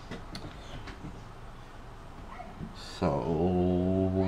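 Quiet room noise with a few faint clicks, then, about three seconds in, a person's low, steady, drawn-out 'mmm' hum that lasts nearly three seconds.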